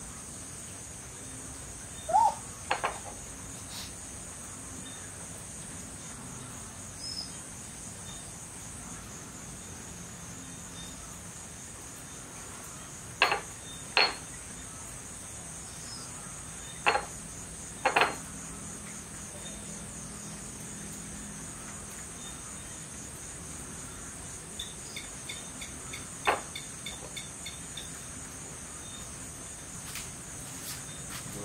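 Steady high-pitched chirring of night insects, with about seven sharp knocks and clicks scattered through it, the loudest being a pair about 13 to 14 seconds in and another pair around 17 to 18 seconds.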